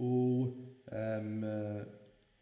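A man's voice holding two long, level-pitched hesitation sounds, like a drawn-out "uhh" and then "mmm": the first about half a second, the second about a second.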